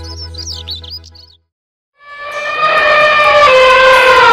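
Bird chirps over the closing notes of a children's song, cutting off about a second and a half in. After a short silence, a loud, drawn-out pitched sound slides slowly downward.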